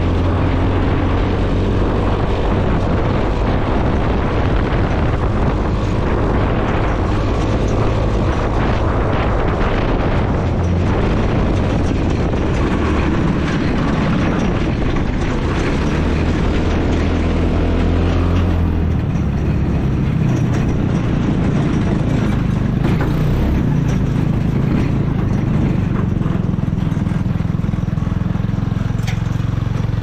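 Helix 150 go-kart's 150cc single-cylinder engine running as the kart drives over grass; about two-thirds of the way through the sound eases off and settles into a lower, steady run as the kart slows.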